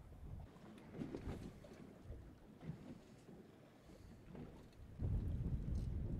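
Wind rumbling on the microphone out on open water, faint at first and much louder from about five seconds in.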